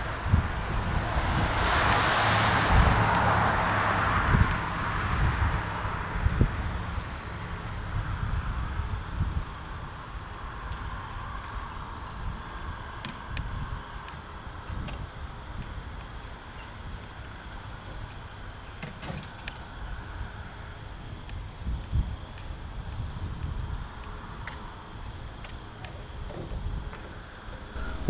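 A road vehicle passing: a swell of noise that rises and fades over the first few seconds. After it comes a low, steady rumble with a few faint clicks.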